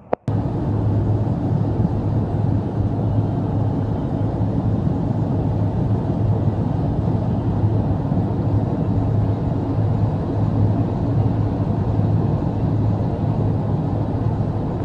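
Car driving, heard from inside the cabin: a loud, steady rumble of road and engine noise with a low hum, starting abruptly.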